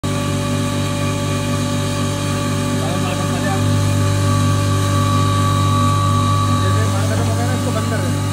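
A 5 HP single-phase stoneless atta chakki (flour mill) running while grinding wheat, a loud steady hum with several steady tones that grows slightly stronger a few seconds in.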